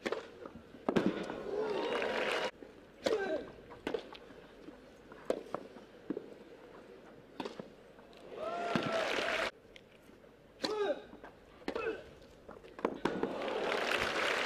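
Tennis rally: sharp racket strikes on the ball, some with a player's grunt. Two short bursts of crowd applause and cheering follow won points, one about a second in and one near two-thirds through.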